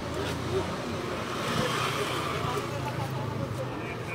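A motor vehicle passing along the street: a low engine sound under a wash of road noise that swells to a peak about two seconds in and fades, with faint voices of people around.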